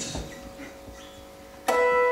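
Twelve-string acoustic guitar: a faint held note, then a chord struck suddenly near the end that rings on.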